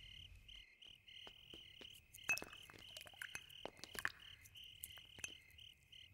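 Faint crickets chirping in an even, steady pulse, with a few soft scattered clicks and crackles.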